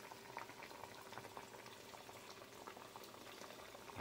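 Pig feet in a pan of water at a rolling boil: faint, steady bubbling with scattered small pops.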